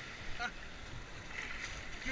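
Moving whitewater rushing and splashing around a kayak's hull as it paddles out of a rapid.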